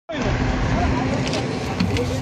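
Steady low engine hum of an idling coach bus, with people's voices faint in the background.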